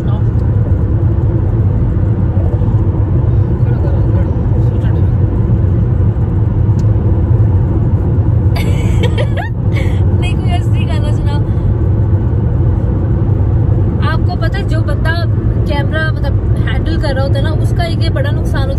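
Steady low road and engine noise inside the cabin of a moving car.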